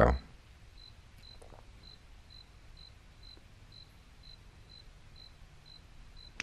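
A quiet pause: a steady low hum, and from about a second in a faint, high-pitched chirp that repeats evenly about twice a second.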